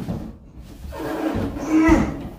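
A man's long strained grunt, swelling louder, as he lifts a heavy clothes dryer up onto a washer by himself, with a thud near the end as the dryer lands.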